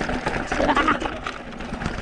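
Mountain bike rolling down a rocky dirt trail: tyres crunching over dirt and loose stones, with a steady run of small knocks and rattles from the bike on the rough ground.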